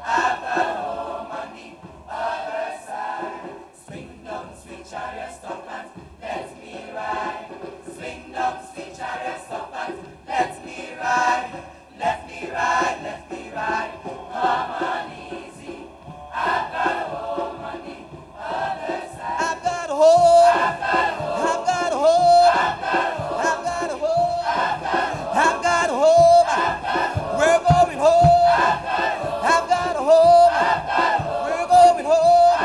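Male choir singing together in a rhythmic, chant-like style. About two-thirds of the way in it grows louder, with a short sung phrase repeating about once a second.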